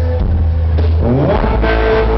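A live country band playing loud, with a heavy bass rumble under acoustic guitar. A man's singing voice slides up into a held note about a second and a half in.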